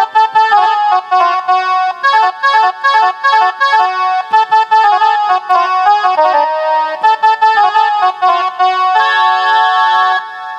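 Casio SA-41 mini electronic keyboard playing a one-hand melody in short, separate notes, ending on a longer held note near the end.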